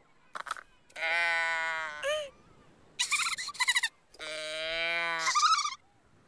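Wordless cartoon voice: whiny, bleat-like calls, two drawn out for about a second each, with quick warbling ones between and after them.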